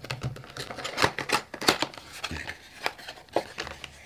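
A small, thin cardboard box being opened by hand: the tucked end flap is worked loose and the carton handled, giving an irregular run of sharp little clicks and scrapes.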